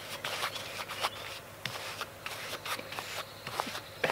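Paintbrush loaded with thinned Mod Podge scrubbed back and forth over the faceted resin drills of a diamond painting: a soft, irregular scratchy rustle of many short strokes.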